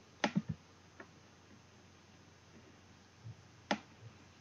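Computer mouse clicks against low room hiss: a quick cluster of sharp clicks right at the start, a faint one about a second in, and a single distinct click near the end.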